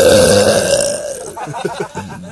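A man's long belch that wavers in pitch and trails off after about a second and a half.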